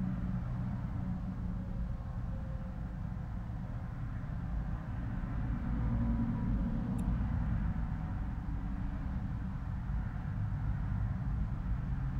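Steady low background rumble with a faint hum, holding even throughout.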